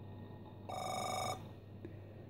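Compaq LTE 5280 laptop sounding a short electronic alert beep, one steady tone a little over half a second long that cuts off abruptly. It is Microsoft Anti-Virus's warning that CONFIG.SYS has been changed.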